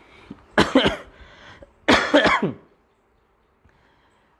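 A person coughing twice, the coughs a little over a second apart.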